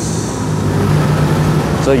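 Low, steady hum of an engine running, its pitch holding level throughout.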